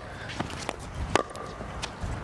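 Pickleball being hit and bouncing: four short, sharp pocks spread over two seconds, the loudest a little past halfway.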